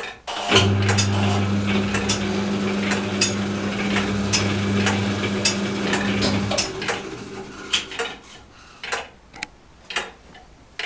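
An electric motor in the church tower clock machinery starts with a steady hum and a mechanical rattle, runs for about six seconds, then cuts out. A clock ticks throughout.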